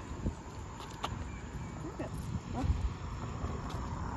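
Outdoor street ambience: a steady low rumble of wind on the microphone and passing traffic, with a few faint, short rising chirps.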